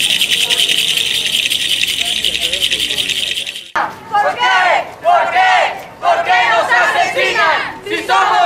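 Rattles shaken in a fast, even rhythm, fading out. After a sudden cut about four seconds in, a crowd of marchers chants slogans in loud shouted bursts about once a second.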